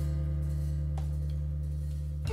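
Electric stage keyboard holding one low sustained chord that slowly fades, with a faint click about a second in.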